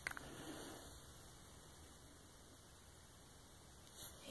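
Near silence: faint room hiss, with a few soft clicks right at the start as the plastic coin capsule is handled.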